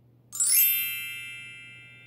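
Bright chime sound effect: a cluster of bell-like tones with a brief shimmer on top, struck about a third of a second in and fading slowly. It marks the next picture appearing.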